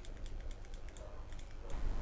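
A run of faint, irregular clicks from working a computer while the page is scrolled, over a low steady hum.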